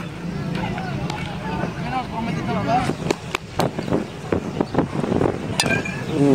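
Background voices of players and onlookers at an outdoor youth baseball game, with a few sharp claps or knocks about halfway through.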